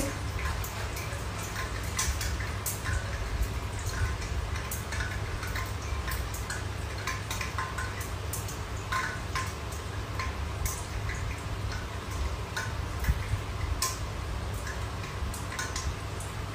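Hot oil popping and spitting in a lidded frying pan on the stove, in sharp pops at irregular moments over a steady low hum.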